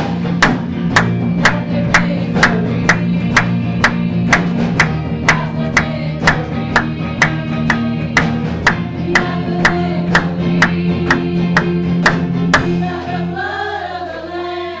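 Live church worship band playing gospel music: a steady drum beat of about two strikes a second over held keyboard and bass chords, with singers. The drum beat stops about a second before the end, leaving the voices.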